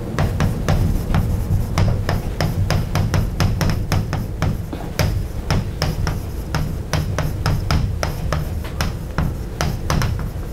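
Chalk writing on a blackboard: an irregular run of sharp taps and clicks, several a second, as letters are written, over a steady low rumble.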